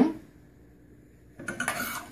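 Metal spoon stirring and scraping against the inside of a stainless steel saucepan of softened gelatin, starting about one and a half seconds in with irregular scrapes and light clinks.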